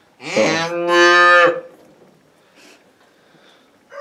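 Charolais cattle mooing once, a call about a second and a half long that rises at its start and then holds steady.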